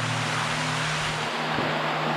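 Steady rush of shallow water flowing along the floor of a corrugated steel culvert, heard from inside the pipe, with a low hum beneath it.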